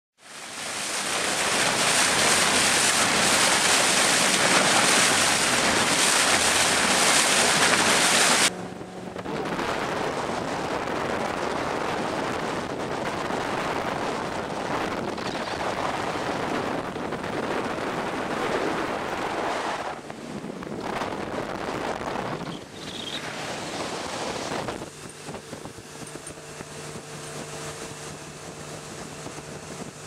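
Wind buffeting the microphone and water rushing past a motorboat under way, cut into several short stretches. The loudest rush stops abruptly about a third of the way in. Near the end a steady low engine drone shows under the wash.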